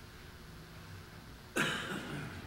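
Quiet room tone, then one short cough near the end.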